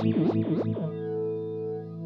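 Electric guitar chord through the HX Stomp's Dynamix Flanger with a fast LFO, sweeping up and down about three times a second. A little under a second in, the sweeping stops as the speed is turned down, and the chord rings on steady and fades.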